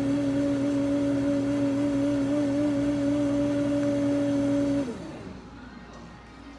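An electric motor in cafe equipment running with a steady, loud hum, then switched off about five seconds in, its pitch falling as it winds down.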